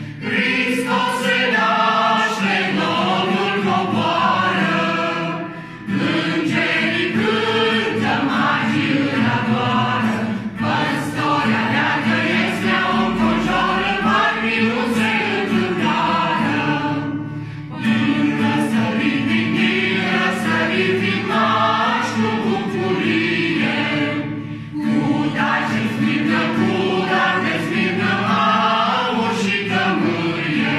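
A mixed group of men and women singing a Romanian Christmas carol (colindă) together, accompanied by a strummed acoustic guitar. The singing runs in long phrases with a few brief pauses between them.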